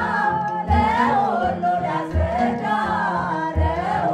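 Mixed choir of men's and women's voices singing an Ethiopian Orthodox hymn (mezmur) in Amharic, with a low drum beat thumping about once a second underneath.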